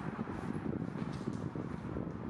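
Steady low background rumble with a few faint light ticks, an ambient noise with no clear single source.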